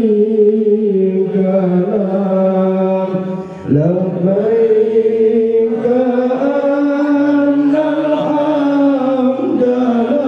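Islamic devotional chanting: long held, slowly gliding sung notes. There is a brief break about three and a half seconds in, then a new phrase begins with a rising glide.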